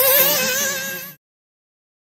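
Alpha Dragon 4 two-stroke nitro engine of a 1/8-scale RC buggy, a high-pitched buzzing whine whose pitch wavers up and down as the throttle is worked on the track. The sound cuts off abruptly just over a second in.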